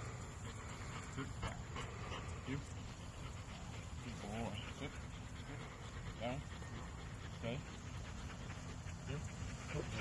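Pit bull whining a few times, with short rising-and-falling whimpers, over a steady low rumble.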